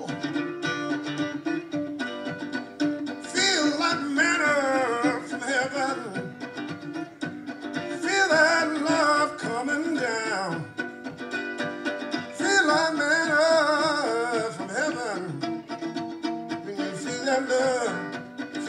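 Blues instrumental break: a mandolin strummed in a steady rhythm while a harmonica held in a neck rack plays three phrases of bent, wavering notes.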